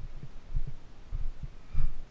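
Irregular dull low thumps and rumble on a body-worn camera's microphone while the climber scrambles over rock. The loudest thump comes near the end.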